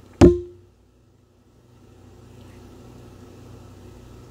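A ceramic mug knocks once against a hard surface as it is picked up, with a short ringing tone that fades within half a second. After that there is only a faint steady low hum.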